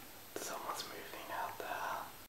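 A person whispering, starting about a third of a second in, soft and breathy with hissing consonants.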